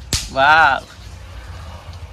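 A sharp snap right at the start, then a child's short, high-pitched call lasting about half a second.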